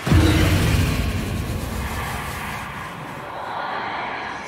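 Horror-film sound-effect hit: a sudden loud boom that gives way to a long, noisy rushing roar, easing off slowly.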